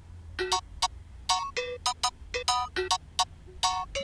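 Sampled agogo bell played on a phone music app's sampler: a quick, uneven pattern of short, bright metallic strikes at several pitches, starting about half a second in.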